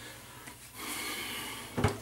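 A man's breath hissing out for about a second, a reaction to the sting of a menthol aftershave just applied to the face and neck, followed by a short click near the end.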